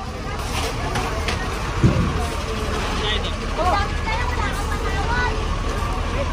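Busy street ambience: a steady low rumble with scattered voices of a crowd. A single dull thump about two seconds in.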